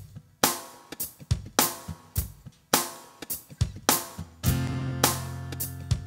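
Instrumental intro of a live reggae-style song: a drum beat with kick, snare and hi-hat. About four and a half seconds in, sustained low notes and an acoustic guitar chord join and ring under the beat.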